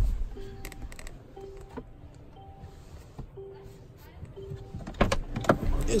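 The rear cabin trim of a Mercedes-AMG G63 being handled: a sharp snap right at the start, as the armrest lid is shut, then scattered light clicks and knocks, which thicken from about five seconds in as a hand goes to the door. Faint background music with a short repeating note runs underneath.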